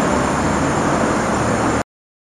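Steady street traffic noise that cuts off suddenly near the end.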